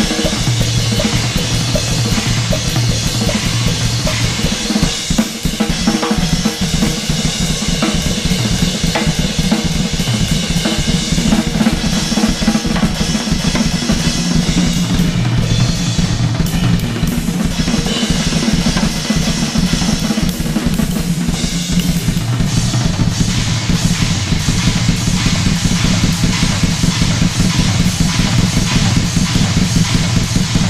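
Yamaha drum kit played solo in a dense, unbroken stream of strokes on bass drum, snare, toms and cymbals.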